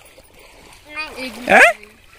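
A short spoken phrase in a wooden boat on a river, over faint water splashing and lapping around the boat.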